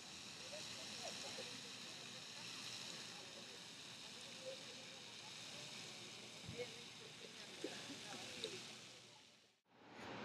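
Faint outdoor ambience: a steady hiss with distant, indistinct voices and a few soft ticks.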